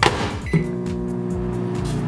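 A thump, then about half a second in a click as a 700-watt Sunbeam microwave oven starts and runs with a steady electrical hum.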